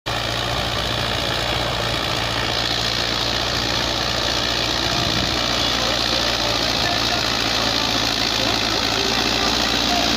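Sonalika 60 tractor's diesel engine running steadily under load while it drives an 8-foot Dashmesh super seeder through rice stubble: a loud, continuous drone with a deep rumble.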